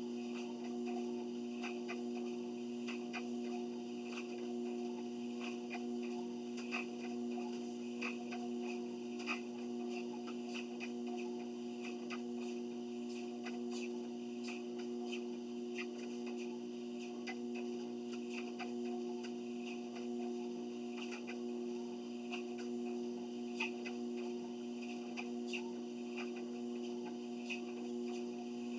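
Treadmill running with a steady two-note motor hum, and faint irregular ticks over it.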